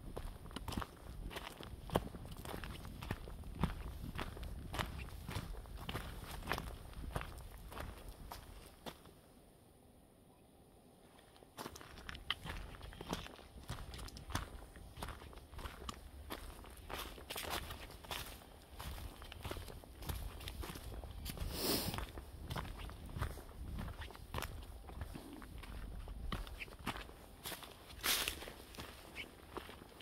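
Footsteps of a person walking on a forest trail covered in fallen leaves, about two steps a second, with a pause of about two seconds near the middle.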